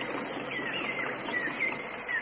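Tropical rainforest ambience: a bird calling in short, curving whistled notes about every half second over a steady background hiss.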